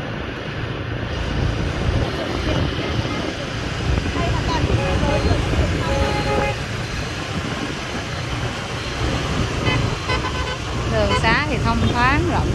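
City street traffic heard from a moving motorbike or car: a steady rumble of engines, tyres and wind on the microphone. Short steady horn-like toots come about four to six seconds in, and a brief wavering sound near the end.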